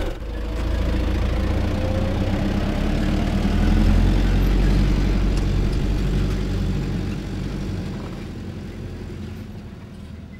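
Big lorry's diesel engine running with a low, steady rumble that fades away over the last few seconds.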